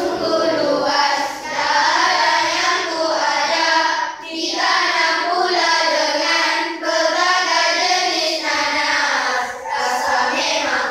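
A group of primary-school children singing a Malay song together in chorus, phrase after phrase with short breaths between.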